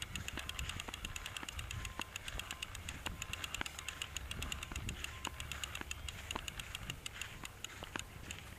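Newell 338 conventional fishing reel clicking rapidly and evenly as its handle is cranked to wind braided line back onto the spool, fairly quiet, over a low rumble.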